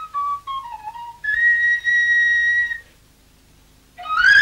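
A solo flute plays a short phrase of notes that bend and slide in pitch, then holds one long, higher note for about a second and a half. The note breaks off a little under three seconds in.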